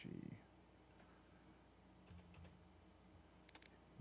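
Near silence with a few faint, scattered computer-keyboard clicks, about a second in and again near the end.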